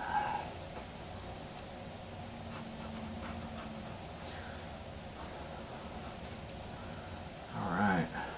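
Mechanical pencil sketching on paper: faint, scattered scratchy strokes of graphite. A brief voiced sound, like a hum or murmur, comes near the end.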